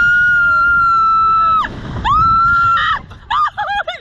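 A woman riding a Slingshot reverse-bungee thrill ride screaming: two long, high, steady screams, then a run of short broken cries near the end.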